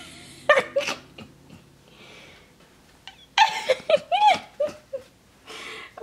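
A woman's wordless voice sounds, soft laughter and delighted exclamations: a brief burst near the start, then past the middle a run of rising and falling vocal sounds.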